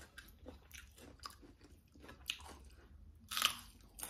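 Close-up chewing of a mouthful of rice, with fingers scraping and picking the last of the food together on a ceramic plate in short, irregular clicks and scrapes. A louder brief rasping noise comes about three and a half seconds in.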